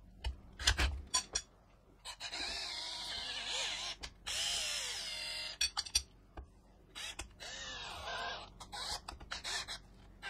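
Cordless drill driving a tap into thin aluminium tubing to cut threads, run in three short spells with the motor speed rising and falling under the trigger. A few clicks near the start as the drill's chuck is handled, and more clicks near the end.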